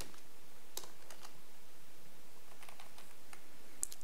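Computer keyboard keystrokes: a few scattered taps about a second in and a quick cluster near the end, over a steady faint hiss.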